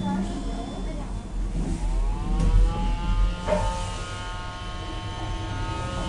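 KONE EcoDisc gearless elevator machine whining as the car gets under way: a pitched whine rises for about a second, then holds steady as the car travels, over a low rumble.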